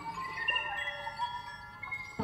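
Electroacoustic tape music: several high, chime-like tones ring and overlap, each starting and fading at its own moment, fairly quiet.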